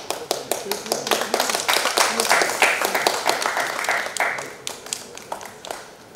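Audience applauding: the clapping starts suddenly, builds to a peak two to three seconds in, then thins out to a few scattered claps near the end.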